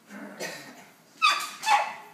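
A pet dog barking twice, two short loud barks about half a second apart, after a softer sound early on.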